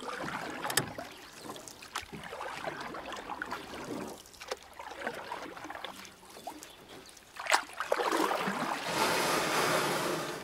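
Water splashing and rushing with wind noise and scattered small knocks, as around a small sailboat on the water. The water noise grows louder from about seven and a half seconds in.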